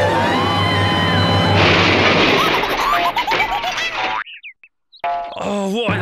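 Cartoon background music, with a run of short springy boing sound effects in its second half. The sound cuts out suddenly for under a second, then comes back with high squeaky voice sounds near the end.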